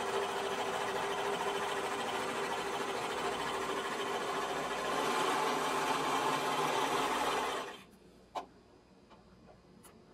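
Serger (overlock machine) running steadily as it stitches cotton elastic onto knit fabric with its trimming knife engaged, getting a little louder about five seconds in and stopping abruptly just before eight seconds. A couple of faint clicks follow.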